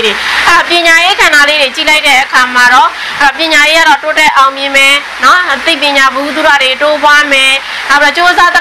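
A woman speaking Burmese in a continuous monologue, with no pauses.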